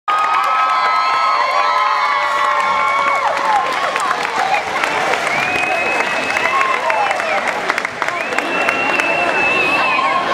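A crowd in a gym cheering, with many high children's voices shouting and holding long whoops over scattered clapping.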